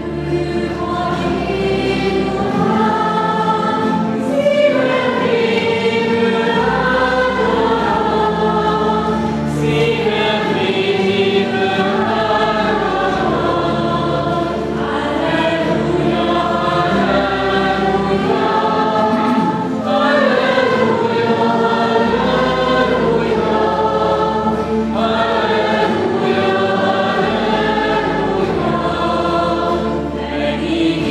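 A small church music group singing a song together in harmony, accompanied by acoustic guitars over a low bass line that moves in slow steps.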